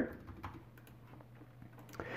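Faint computer keyboard keystrokes, a few scattered clicks, over a low steady hum.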